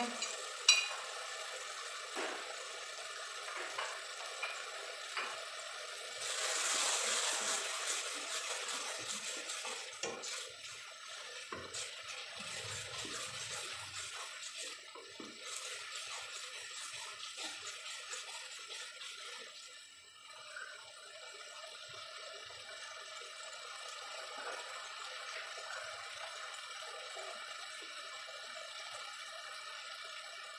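Mash daal (split urad lentils) frying and simmering in its oil-and-tomato masala in a pot: a steady hiss, louder for a few seconds about a fifth of the way in. A spatula stirs and scrapes the pot around the middle.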